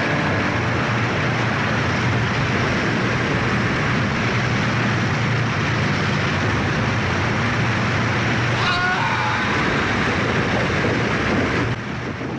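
Waterfall pouring: a steady, dense rush of water that holds unchanged throughout. A brief voice-like cry sounds over it about three-quarters of the way through.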